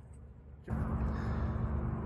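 Small motorbike engine running steadily with a low hum, cutting in abruptly about two-thirds of a second in after a faint low rumble.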